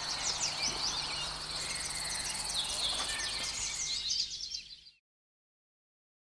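Outdoor chorus of chirping insects and short gliding bird-like chirps, over a faint low hum, fading out to silence about five seconds in.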